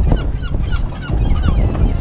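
A flock of seabirds calling, many short squawks of different pitches overlapping several times a second, over a steady low rumble.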